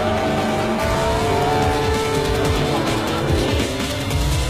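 BMW M4 GTS straight-six running hard as the car drifts, its pitch gliding up and down, with tyres squealing, over background music.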